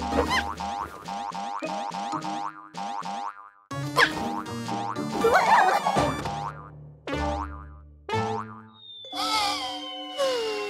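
Playful cartoon music with a quick run of short rising sliding sound effects, about two or three a second, through the first few seconds. A long falling slide begins near the end.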